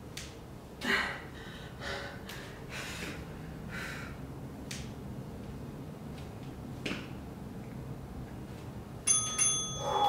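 Heavy breathing with hard exhales about once a second during dumbbell squats. About nine seconds in, a workout interval timer's bell-like chime of several high tones rings for about a second, signalling the end of the exercise interval.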